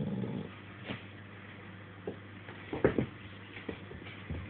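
A Staffordshire bull terrier gives a low grunt, then a few short knocks follow as it gets up, the loudest about three seconds in.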